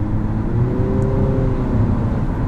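Cabin sound of the 2022 Infiniti QX55's 2.0-litre variable-compression turbo four-cylinder running at highway speed: a steady low drone with a faint engine tone that rises gently and then levels off, over road and tyre noise.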